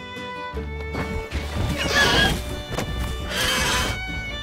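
Two loud, shrill dinosaur screech sound effects, the first about a second and a half in and the second near the end, over background music.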